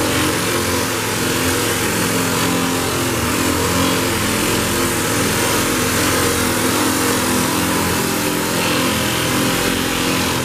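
Hose-fed air sander running steadily against a car's steel door, sanding down the patched paint and filler.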